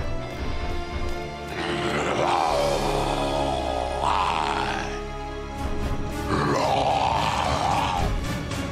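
A cartoon monster's voice growling twice, each growl lasting a couple of seconds, over background music.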